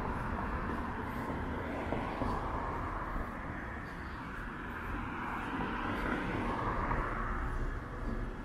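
Outdoor city ambience with a steady distant engine rumble that swells and fades twice.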